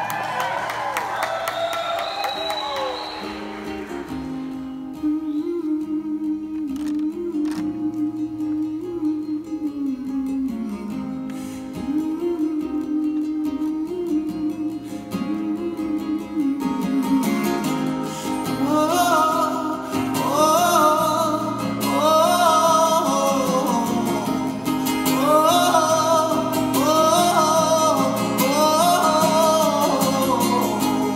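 Solo acoustic guitar and male voice performing live: a sung line at the start, then about a dozen seconds of guitar alone, with the singing coming back in about halfway through and continuing over the guitar.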